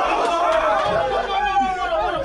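Chatter of a group of young men talking over one another in a crowded room, many voices overlapping.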